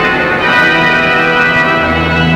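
Organ music playing slow, held chords; a deep bass note comes back in near the end.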